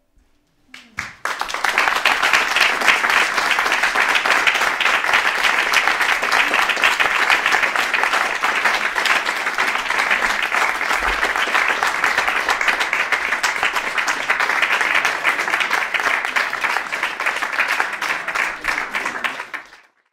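Audience applauding: dense, steady clapping that starts about a second in and fades out near the end.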